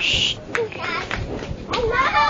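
A small child's voice: babbling with short high-pitched vocal sounds, and children's voices in the background.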